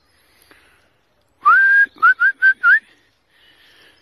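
A person whistling to call a dog: about a second and a half in, one longer note that rises and then holds steady, followed by four short, quick whistles.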